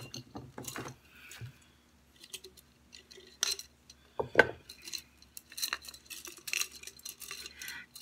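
Scattered light clinks, clicks and taps of objects handled on a table: a glass jar of thin wooden sticks and a pair of metal scissors being picked up and put down, with one sharper knock about four seconds in.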